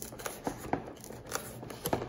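Fingers and fingernails picking and prying at the edge of a cardboard trading-card box: light rustling with a handful of small sharp clicks and scratches.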